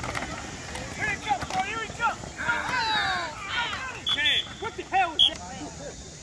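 Several children and adults shouting over one another on a football field while a play is run. A short, high whistle blast sounds about four seconds in.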